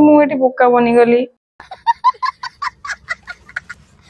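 After a woman's words in the first second, a child's high-pitched laughter in rapid short bursts, about four or five a second, to the end.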